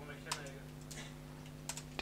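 Computer keyboard keys clicking a few times, faint and spaced out, as code is typed, over a steady low hum.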